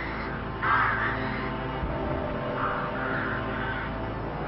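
A crow-family bird calls in two bouts, about half a second in and again near three seconds, over a sustained, eerie music bed.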